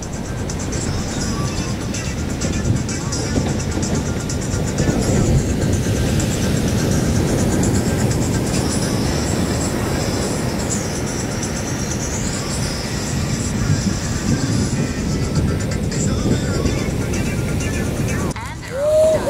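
Ocean waves breaking and washing over a rocky reef in a continuous roar.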